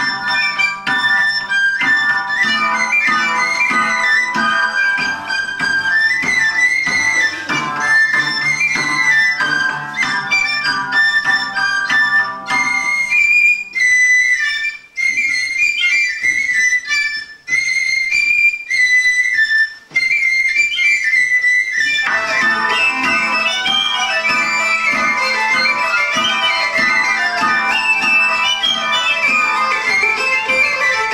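Folk dance tune on three-hole pipes over a hurdy-gurdy drone, with strokes of a string drum. From about 13 seconds in, the drone and drum drop out and a lone pipe plays in short phrases; the full ensemble comes back in about 22 seconds in.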